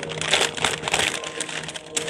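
Butter paper crinkling and rustling in irregular bursts as it is folded around an item and pressed down into a cardboard box.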